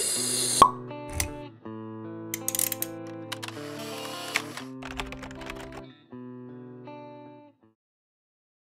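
Short intro jingle for an animated logo: sustained musical chords overlaid with clicks and plopping pops, plus a couple of low thuds. It stops about seven and a half seconds in.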